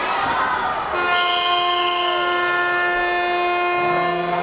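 Ice hockey arena horn sounding one long, steady blast that starts about a second in, over the murmur of the crowd.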